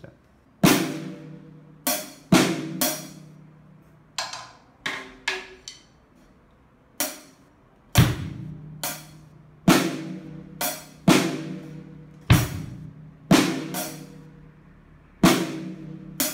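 Drum kit struck with sticks in single, unevenly spaced strokes, cymbals ringing out together with bass-drum and snare hits. Sometimes two or three strokes come close together, sometimes there is a pause of a second or more: a student working slowly through a practice exercise.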